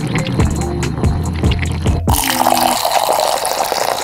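Pestle squishing sticky toothpaste paste in a stone mortar, then a tap-water stream starts suddenly about halfway and pours into the mortar, filling it with foam. Background music plays throughout.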